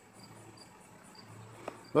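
A cricket chirping faintly and evenly, about four high chirps a second.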